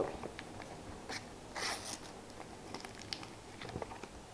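Paper wrapper of a sealed football-sticker packet crinkling and rustling faintly as it is picked up and handled, with small clicks and one louder crinkle about one and a half seconds in.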